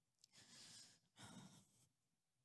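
A woman's two faint, unsteady breaths close to a microphone, the second a sigh, as she composes herself while holding back emotion.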